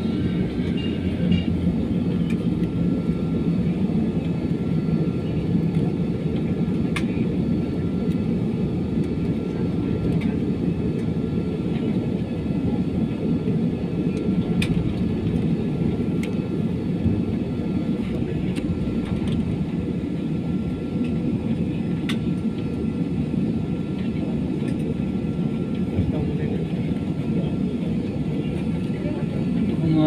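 Airliner cabin noise while taxiing: the engines running at low power as a steady low rumble, with a thin steady whine and a few faint clicks.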